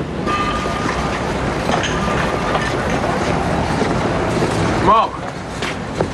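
Busy city street background: steady traffic noise with indistinct voices, and a short, loud rising-then-falling tone about five seconds in.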